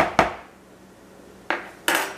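Metal measuring tablespoon knocking twice against a mixing bowl as paprika is tapped off it, then a short quiet pause and two clicks as the spoon is laid down on the counter.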